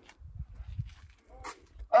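A dog gives a short bark about one and a half seconds in, over a low rumble.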